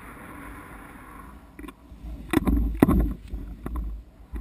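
Steady rushing noise on a paramotor chase camera's microphone for about the first second and a half, then a run of irregular thumps and knocks with low rumbling as the camera rig is buffeted while the paramotor comes down close to the ground to land.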